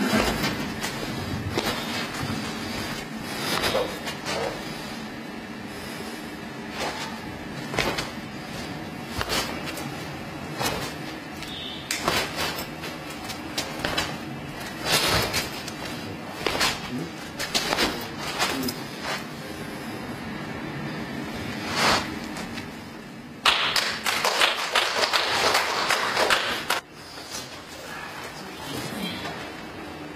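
Irregular sharp thuds and snaps from a Xingyi quan martial artist's stamping footwork and strikes, over a steady low hum. Near the end comes about three seconds of loud, dense hiss that starts and cuts off abruptly.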